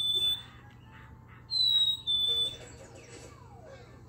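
A plush black-capped chickadee toy, squeezed, plays its recorded two-note fee-bee song: a clear high whistle followed by a slightly lower one. One song's second note ends about half a second in, and the full song plays again about one and a half seconds in.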